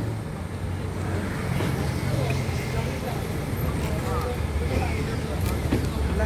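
A truck engine idling with a steady low hum, under indistinct talk from a group of people.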